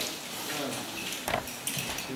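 Handheld video camera being moved, its handling making a few brief clicks and rustles over faint voices in a room.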